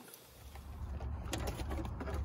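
Near-quiet at first, then a steady low rumble inside a vehicle cabin, with a few faint clicks of cables being handled.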